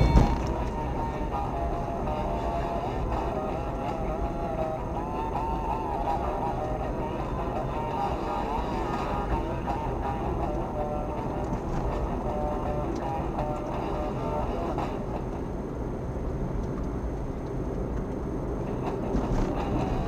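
Music from the car's radio playing inside the cabin over steady engine and road noise from the moving car.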